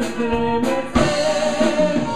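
Live conjunto band playing: a diatonic button accordion, electric bass and drum kit, with a voice singing over them.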